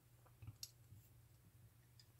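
Faint clicks from the Civivi Dogma folding knife's blade action as it is handled: two small clicks about half a second in and a softer one near one second, otherwise near silence.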